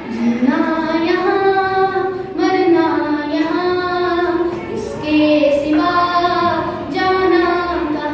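A boy singing solo, his voice held in long sustained notes that step between pitches in short phrases, with no instruments heard.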